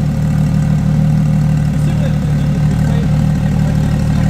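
A Porsche 992 GT3 Touring's 4.0-litre flat-six idling steadily and loudly through an aftermarket Dundon exhaust, with a header in place and the centre muffler removed.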